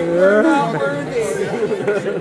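Several people talking at once in lively chatter, one voice rising in pitch right at the start.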